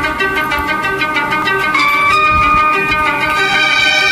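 Instrumental opening of a Tamil film-song karaoke backing track, with no singing. A quick, even pulse runs under steady melody notes, and a new high note enters and is held from about two seconds in.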